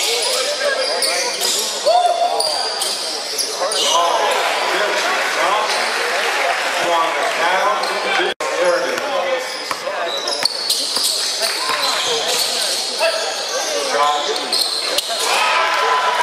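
Live basketball play in a large gym: the ball bouncing on the hardwood court amid indistinct shouts from players and spectators, all echoing in the hall.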